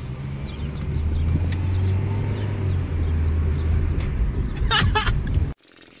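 Car engine and road noise heard from inside the cabin: a steady low rumble, with a brief voice near the end, before it cuts off suddenly about five and a half seconds in.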